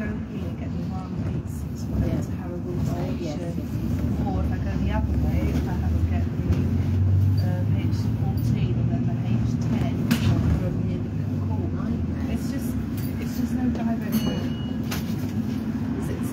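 Inside a moving bus: a steady low engine and road rumble that swells in the middle of the ride, with faint passenger chatter over it.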